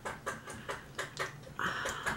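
Faint small clicks and handling noise of a mini liquid lipstick tube being opened, with a short scrape near the end as the applicator wand is drawn out.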